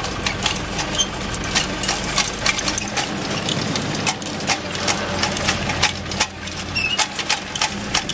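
Steel seeder unit of a draft-animal toolbar rolling over sandy ground. Its drive chain, sprockets and seed-metering plate click and rattle irregularly, several clicks a second, over a steady low hum.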